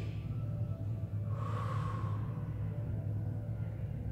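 A single soft exhaled breath about a second and a half in, lasting about a second, over a steady low hum.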